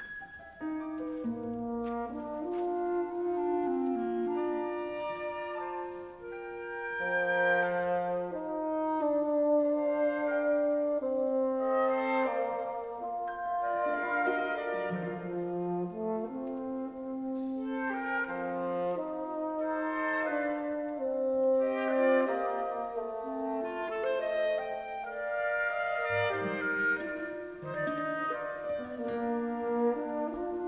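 Orchestral music: several instrumental lines in long held notes, moving slowly against one another in a calm, sustained texture, entering just after a brief silence.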